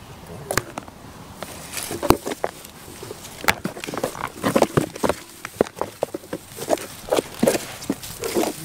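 Goats eating treats right at the microphone: an irregular run of close crunching clicks and crackles, starting about two seconds in and growing busier toward the end.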